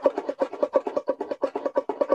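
Six-string banjo, flatpicked in a fast, even cross-picking pattern of two down strokes and one up stroke across a pair of strings. About eleven or twelve bright, short notes a second keep repeating the same few pitches.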